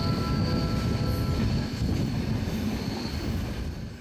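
Flåm Railway train climbing a curve: a rumble of wheels on the track with a steady high wheel squeal, both fading away near the end.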